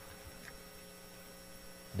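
Low, steady electrical hum with faint room tone in a pause between speech, typical of mains hum picked up by the sound system or recording.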